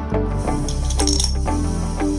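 Background music with a steady beat of plucked notes; from about half a second in, a high clinking rattle of a LEGO 2x4 brick sliding down the Spike Prime colour sorter's chute and dropping onto the wooden floor.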